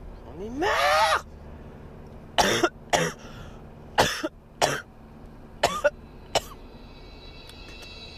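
A sick man coughing: a rising strained vocal sound about a second in, then six sharp coughs in three pairs.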